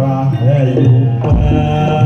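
Live jaranan gamelan music: steady gong and drum tones carrying a wavering melody, with a low drum thump a little past the middle.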